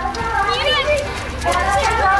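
Children's voices calling and chattering over one another, with a high voice rising and falling about half a second in.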